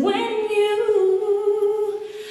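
A woman singing one long held note into a microphone, with no audible accompaniment; the pitch steps down slightly about halfway.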